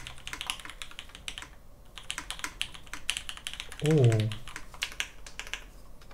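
Fast typing on a custom mechanical keyboard (Matrix 2.0 Add.) fitted with vintage Cherry MX Black linear switches: a dense run of key strikes that pauses briefly about one and a half seconds in.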